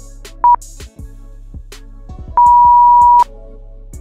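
Electronic countdown-timer beeps over a looping background music beat: one short high beep about half a second in, then a long beep of the same pitch lasting nearly a second, marking the end of the countdown.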